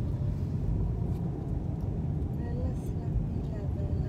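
Car driving slowly along a street, heard from inside the cabin: a steady low rumble of road and engine noise, with faint speech under it.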